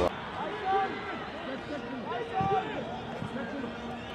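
Stadium crowd noise at a football match: many voices overlapping, calling and singing over a steady hubbub.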